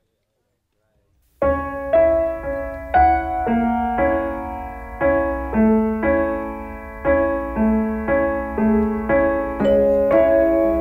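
Silence, then piano music starts about a second and a half in: a steady run of struck piano notes and chords, about two a second, each one fading before the next.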